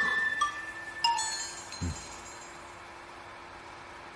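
A few light, bell-like chime notes ringing and fading, with a soft thump just under two seconds in, then a faint steady hum.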